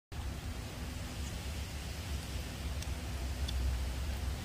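Steady low rumble and hiss of wind on the microphone, with a few faint light ticks a little under three seconds in and again about half a second later.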